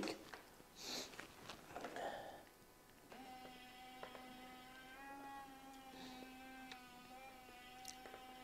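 Small DC gear motor driving a 3D-printed PLA mechanism, starting a faint steady hum with a thin whine about three seconds in, after a few soft handling noises.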